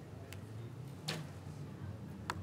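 A recurve bow shot: a faint tick, then a sharper click about a second in, over quiet steady background noise.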